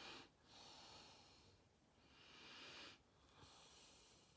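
Faint nasal sniffing and breathing: a few long, soft breaths of about a second each, drawn in through the nose while smelling the flesh of a peeled easy-peeler mandarin.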